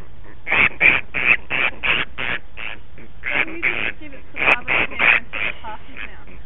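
Grey-headed flying-fox giving a rapid run of short, harsh squawks, about three a second, in two bouts with a brief pause about halfway: the protest calls of a cranky, distressed bat being handled.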